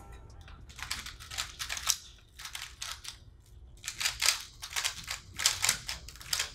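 Two 3x3 speed cubes being turned fast by hand during a timed solve: a quick, uneven run of plastic clicking and clacking turns with a couple of brief lulls.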